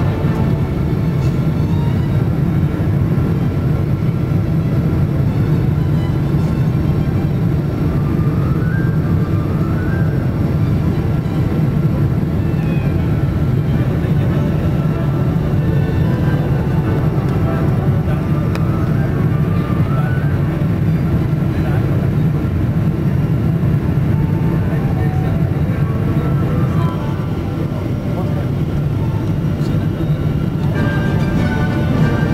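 Steady drone of an airliner's jet engines heard inside the cabin during the climb, mixed with background music that carries a singing voice.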